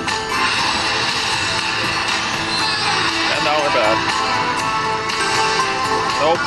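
Astro Cat video slot machine playing its bonus-round music and chimes while the free-spin reels run and a win is added to the meter.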